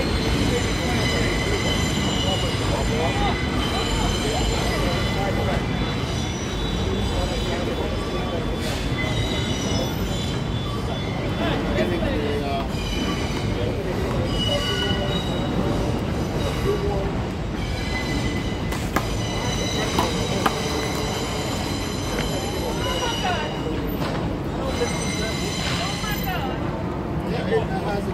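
Elevated subway train running on steel rails, with a steady low rumble and several high wheel-squeal tones that fade in and out.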